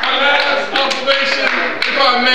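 A man preaching into a microphone, with scattered sharp taps at irregular moments.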